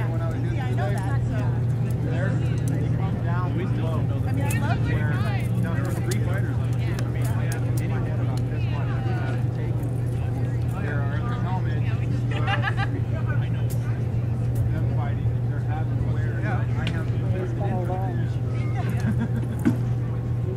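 Background chatter of spectators' voices over a steady low hum, with scattered sharp knocks from rattan weapons striking shields and armour in heavy armoured combat.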